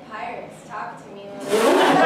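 A performer's quiet spoken line, then about one and a half seconds in a live audience bursts into loud laughter that continues.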